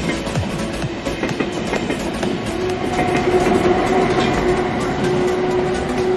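Deutsche Bahn ICE high-speed train rolling past on the platform track, a steady rumble with a steady tone coming in about halfway and fading near the end, mixed with background music.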